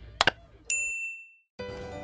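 Sound effects of an animated like-and-subscribe reminder: two quick mouse clicks, then a single bright notification-bell ding that rings out within half a second. Music starts again near the end.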